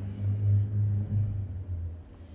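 A low rumble that swells and fades unevenly, dropping away near the end.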